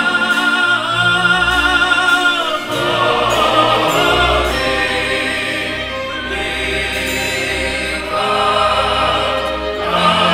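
Male cantorial choir and symphony orchestra performing, with soloists singing in an operatic style. A long note with vibrato is held for about the first two and a half seconds, then the fuller choir and orchestra carry on.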